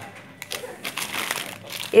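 Plastic food packets crinkling and rustling as they are handled on a table, in scattered short crackles.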